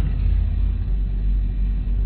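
A pause in speech filled by a steady low hum with a faint even hiss: the background noise of the talk's recording.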